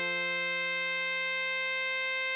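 Computer-rendered tenor saxophone melody holding one long, steady note (written D6) over a sustained F major chord accompaniment.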